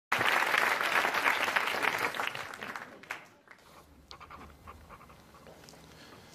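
Studio audience applauding, dying away over the first three seconds, followed by a few faint clicks.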